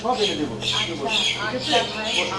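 A person's voice raised in short, shrill calls with no clear words.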